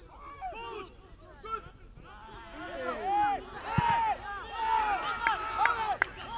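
Football players shouting short calls to each other during play, growing louder and more frequent from about two seconds in, with a single sharp thump such as a ball kick near the middle.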